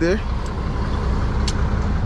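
Semi-truck's diesel engine running at low speed as the rig reverses slowly, a steady low rumble heard from inside the cab, with two faint ticks about a second apart.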